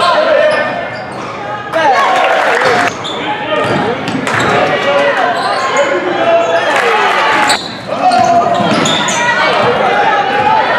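Live sound of a basketball game in a reverberant gymnasium: many spectators' voices and shouts mixed with a basketball bouncing on the hardwood floor. The sound changes abruptly a few times where the footage is cut.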